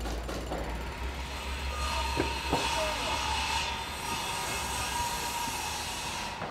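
Rumbling, hissing sound effect with a steady high tone that comes in about two seconds in, and a couple of sharp clicks.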